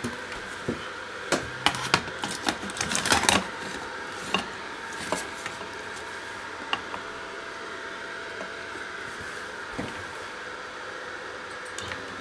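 Light clicks and knocks of an acrylic piece and a paper tissue being handled on the bed of a laser engraver. They are busiest in the first few seconds, with a short run of rustling about three seconds in, and then come only now and then over a steady hum.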